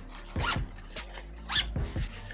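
Backpack zip being pulled: two quick zipping strokes about a second apart. The zip runs smoothly.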